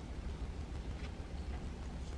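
A few faint scrapes of a small facial razor drawn across cheek skin, over a steady low hum.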